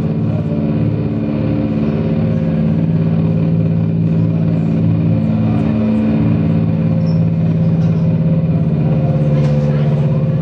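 A loud, steady drone from a live band's amplified rig: a low held tone with overtones that barely changes, swelling slightly, much like an idling engine.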